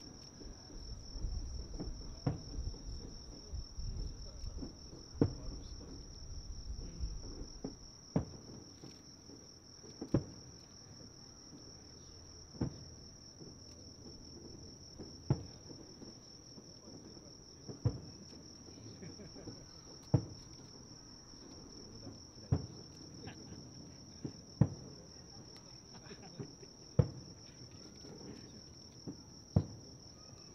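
Distant aerial fireworks shells booming, denser with a low rumble for the first several seconds, then single booms about every two and a half seconds. A steady high-pitched insect trill runs underneath.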